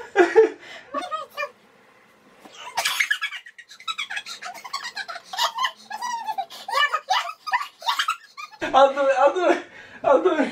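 Laughter and wordless vocalizing from two people, broken by a short quiet pause about two seconds in.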